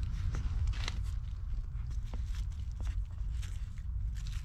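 Footsteps crunching through dry leaf litter and twigs on a woodland floor, a quick irregular crackle, over a steady low rumble.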